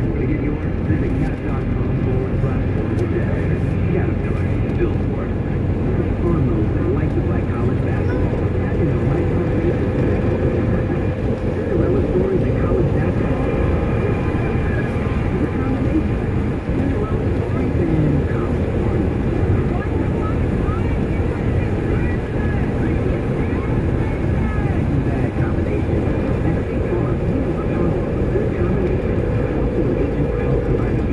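Steady low road and engine rumble inside a moving car's cabin, with faint indistinct talk underneath.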